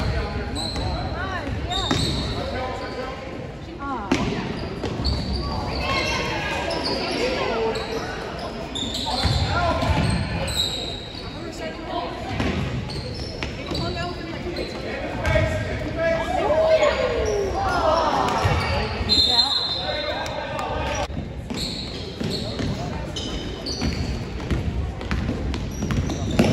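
Youth basketball game in a gym: the ball dribbling and bouncing on the floor, many short high sneaker squeaks, and indistinct shouts and voices echoing around the hall.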